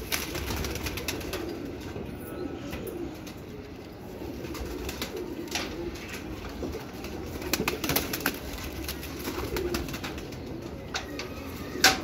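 Domestic pigeons cooing softly, a low wavering murmur that runs on with scattered light clicks and rustles over it.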